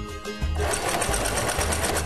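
Electric domestic sewing machine running, stitching a seam through fabric; it starts about half a second in and runs steadily at a fast stitch rate.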